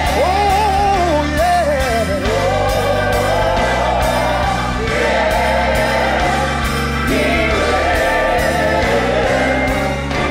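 Live gospel worship music: a sung vocal line with long held, sliding notes over sustained keyboard chords and low bass notes.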